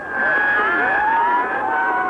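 Several police sirens wailing at once, their pitches gliding up and down across each other.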